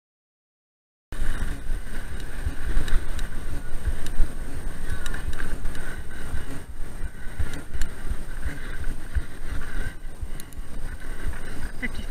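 Silence for about the first second, then wind noise and a continuous rumble of a mountain bike rolling over bumpy grass, picked up by the rider's action camera, with a few faint clicks and rattles.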